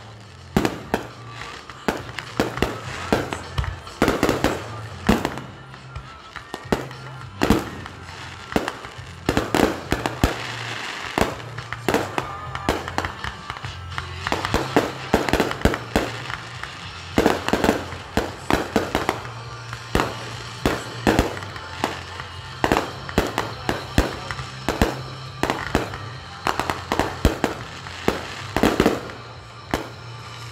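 Aerial fireworks going off in rapid succession: launch thumps, bursting bangs and crackles, often several a second, with brief lulls between volleys. Music with a steady bass line plays underneath.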